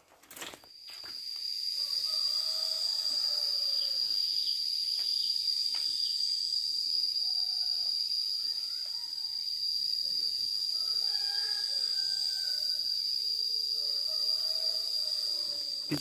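Insect chorus droning in one steady high-pitched tone. It begins about half a second in and holds without a break, with faint wavering calls far beneath it.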